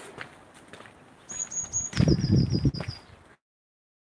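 A small bird's rapid trill of high, evenly repeated notes, stepping down in pitch partway through, with low thumping noise underneath. The audio then cuts out completely to silence.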